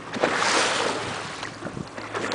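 Boat under way on open sea: water rushing along the hull with wind on the microphone. The rush swells suddenly about a quarter second in, then eases off toward the end.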